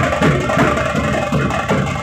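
Large steel-shelled drums of a street band beaten with sticks in a loud, steady rhythm, about three strokes a second.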